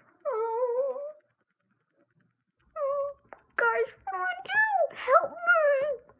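A child's high-pitched, wordless voice making drawn-out wavering whines and cries, in character for the toy pets. There is one long cry near the start, a pause, then a string of shorter rising-and-falling cries from about halfway through.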